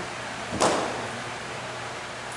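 A single thump about half a second in as a large open Bible is set down onto a wooden pulpit.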